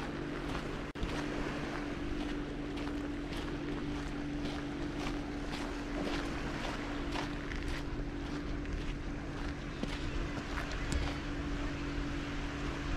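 Footsteps crunching irregularly on damp sand and small pebbles, over a steady low hum.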